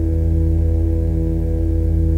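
Dark ambient music: a loud, steady low drone of several held tones, without drums or strikes.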